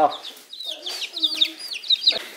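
Chicks peeping in a carrier: a rapid series of short, high peeps, each falling in pitch.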